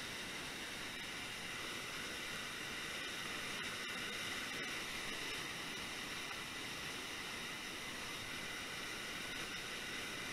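Waterfall pouring into a churning plunge pool, a steady even rush of white water with no let-up.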